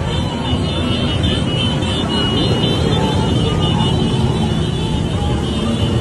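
Engines of a large column of motorcycles riding along a street, many running together as one dense, steady engine noise.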